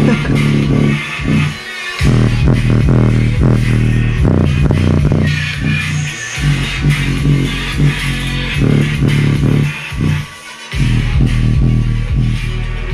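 Bass-heavy electronic music played loud through a 4-inch mini subwoofer in a wooden box, pushed toward its power limit in a stress test; the deep bass line dominates. The music cuts out briefly twice, about two seconds in and about ten seconds in.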